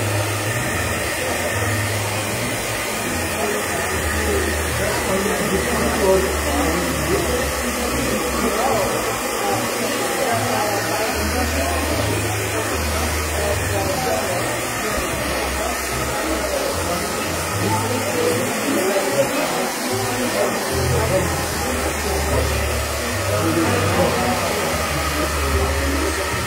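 Hair dryer blowing steadily to dry wet watercolour paint on paper.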